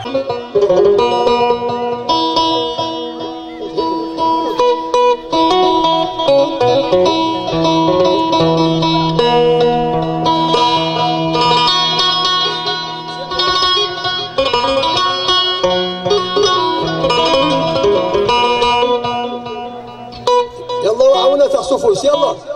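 Live band music led by a plucked banjo, with electric guitar and long held low notes underneath. A voice comes back in near the end.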